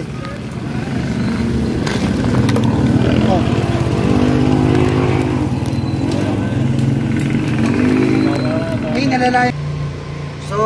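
Road traffic noise: a steady low engine rumble, with a motor vehicle running close by for several seconds in the middle.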